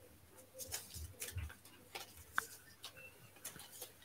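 Faint scattered clicks and light knocks of draw balls being handled and picked from the draw pot by hand.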